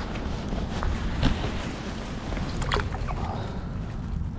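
Steady low rumble of wind on the microphone, with a few brief rustles and clicks of handling about a second in and near three seconds.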